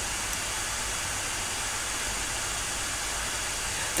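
Steady, even background hiss with no other sound in it.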